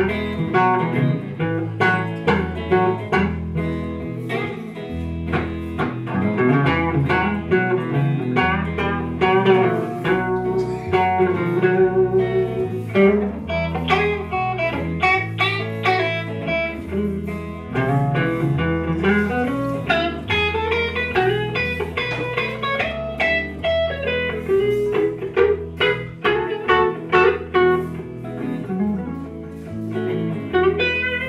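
Live blues band playing an instrumental break: a picked lead solo of quick melodic runs over electric guitar and bass.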